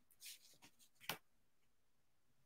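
Near silence: room tone with a faint brief rustle near the start and a single soft click about a second in.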